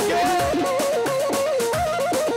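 Folk music with a single ornamented melody line over a steady drum beat of about two strokes a second.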